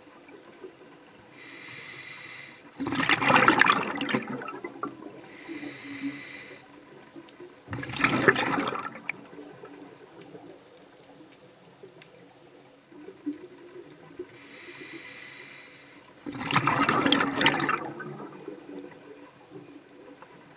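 Scuba diver breathing through a regulator underwater: three breaths, each a hissing inhale followed by a louder rush of exhaled bubbles.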